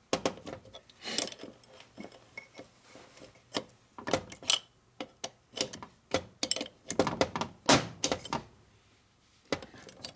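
Steel wrench clinking and knocking against nuts and the aluminium case of a Harley-Davidson 4-speed transmission as the nuts are tightened back down. The clicks come in irregular bursts, busiest in the second half.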